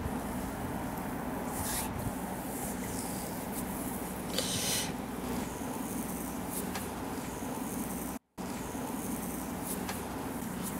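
Oiled hands gliding and kneading over the skin of a calf during a massage, a few soft swishing strokes over a steady low background hum. The sound drops out completely for a moment about eight seconds in.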